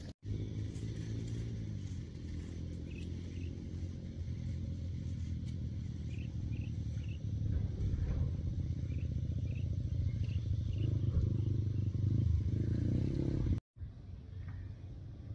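A low, steady engine drone that grows louder about halfway through, with a few short high chirps over it.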